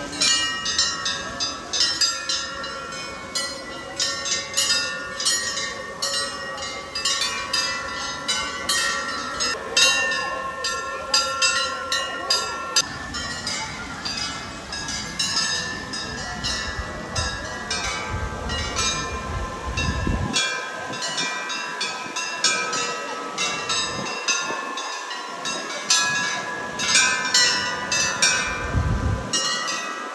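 Metal bells struck over and over at an uneven pace, their ringing tones overlapping into a continuous clangor.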